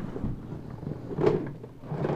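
Handling noise from plastic toy blasters being shifted and picked up: soft knocks and rustling.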